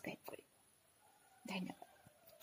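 A woman's soft, whispery voice: a few brief breathy sounds at the start and one short voiced syllable about one and a half seconds in, with quiet between.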